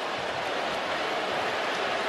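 Steady noise of a large stadium crowd, an even wash of sound that grows slightly louder.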